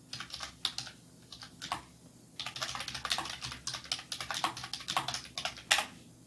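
Typing on a computer keyboard: a few scattered keystrokes at first, then fast continuous typing from about two and a half seconds in, with one sharp, louder keystroke near the end.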